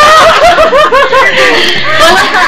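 A person laughing in a quick run of short, pitched laughs that trails off near the end.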